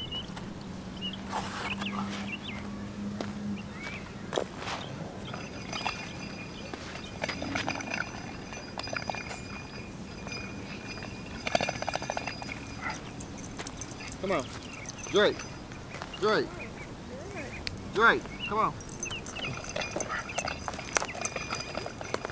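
Dogs barking in short, sharp barks, a run of them coming in the second half, over faint distant voices.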